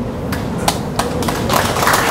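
A few scattered handclaps from the audience: several separate claps, then a short, denser spell of clapping near the end that stops suddenly.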